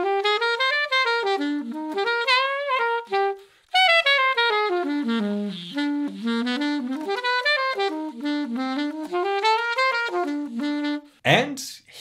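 Saxophone playing a quick melodic line, running up and down with a short break about four seconds in. It is played on an unadjusted cane reed that the player finds stuffy and very resistant, with low notes lacking clarity. A man's voice comes in near the end.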